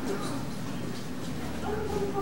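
Wordless vocal sounds from a person, rising and falling in pitch and clearest near the end, over a steady low background hum.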